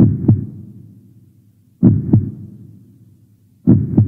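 Heartbeat sound effect: three slow, low double thumps (lub-dub), a little under two seconds apart.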